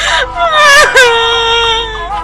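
A young woman wailing and sobbing: long, high, held cries that break with a gasping sob near the start and catch twice around the middle.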